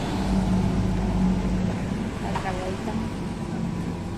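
A motor vehicle on a city street: a low engine rumble that fades away after about two seconds, with a voice briefly in the background.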